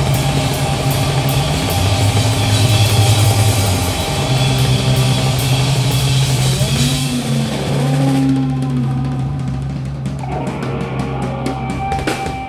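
Live rock power trio playing loud: electric guitar, bass guitar with sustained low notes, and a drum kit with cymbals. In the last few seconds the drums break into a quick run of hits.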